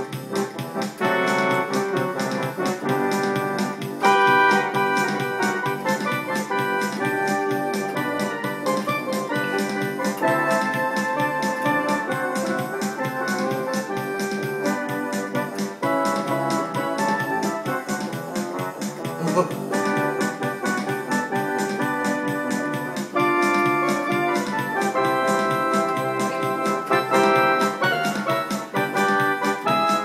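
Casio electronic keyboard played with both hands: a tune over chords, with notes held for a second or more at a time.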